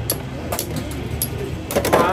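Two Beyblade X spinning tops whirring and clacking against each other and the plastic stadium, with a few sharp hits and a fast, louder run of clacks near the end.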